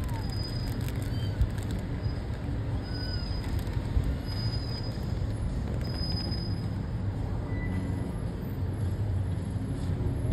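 Low, steady rumble of a car's engine and tyres heard inside the cabin while driving slowly, with two soft knocks about one and a half and four seconds in.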